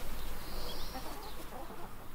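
Domestic chickens clucking faintly in the background.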